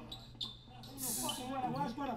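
Quiet, low talking, with a soft click early on and a brief hiss about a second in.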